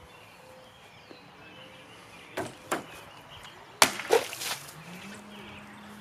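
A khopesh stabbing into a water-filled plastic jug with two short strokes, the stab and the pull-out. About a second later comes a louder hit as the blade backhand-slashes the jug, followed by a brief rush of splashing water.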